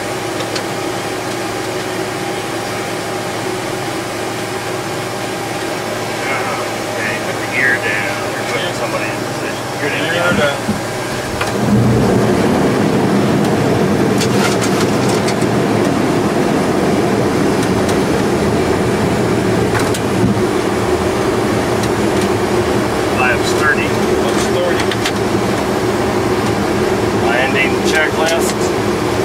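Boeing 727-200 cockpit noise on approach: a steady rush of airflow and engine hum. About a third of the way in it suddenly grows louder and stays so, with a deeper rumble added, which fits the landing gear being lowered ahead of the landing checklist.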